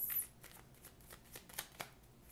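A deck of oracle cards being shuffled by hand, overhand: a brief rustle right at the start, then a run of light, irregular clicks as the cards flick against one another.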